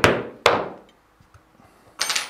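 A mallet strikes a 3 mm stitching chisel, driving its thin prongs through leather to punch stitching holes. There are two sharp knocks about half a second apart.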